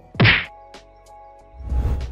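An edited sound effect: one sharp whack about a quarter of a second in, then faint background music, and a swelling whoosh near the end as a transition effect.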